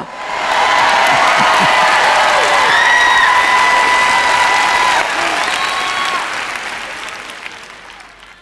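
Studio audience applauding, with a few voices calling out over the clapping. The applause swells quickly, holds, then fades away over the last few seconds.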